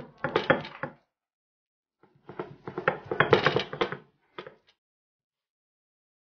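Stone roller crushing grated coconut, onion and chilli on a flat ammi kal grinding stone, stone grating on stone through the food. There are two grinding passes, the first about a second long and the second about two seconds, then a brief scrape.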